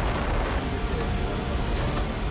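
Strong tornado wind roaring and buffeting the microphone, a loud, steady rush with a deep rumble underneath.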